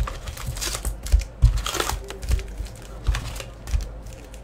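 A cardboard hockey-card hobby box being handled and its wrapped card packs pulled out: crinkling wrappers with irregular light clicks and soft knocks against the box and table.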